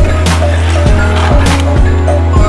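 A simple electronic tune with a steady bass and melody, over sharp plastic clicks and rattles from a toy slide track running, about two clicks a second.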